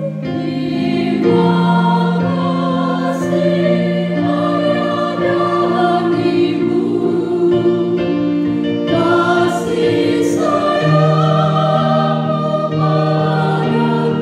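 Church choir singing a hymn in several parts, the voices moving together in long held notes.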